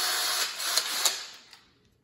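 Cordless drill run briefly with the trigger squeezed: a steady motor whir that stops about a second in and winds down to silence.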